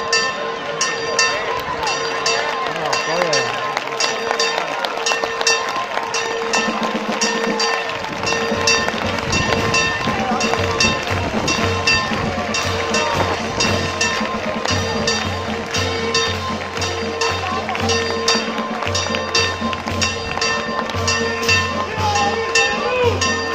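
Rapid, evenly repeated strikes of a bell over its steady ringing, against the voices of a large crowd; about eight seconds in, the low notes of a band's music come in underneath.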